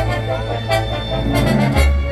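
Symphony orchestra playing, brass prominent over a steady low bass note, with a few sharp accents in the second half.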